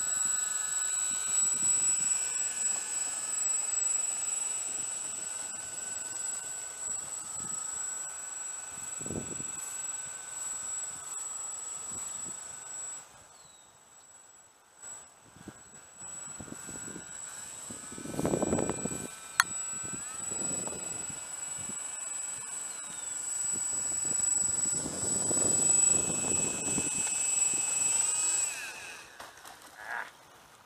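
Three electric brushless motors of a radio-controlled Junkers tri-motor model (E-flite 10-size) whining as the model taxis on its propellers. The throttle is cut for a moment about halfway through, then the motors spool back up with rising pitch and are cut off near the end. There are a few louder rushes of noise and one sharp click.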